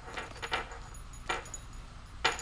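Hands handling cloth and paper at a tabletop: soft rustling with three brief, light clicks, the loudest a little past the middle.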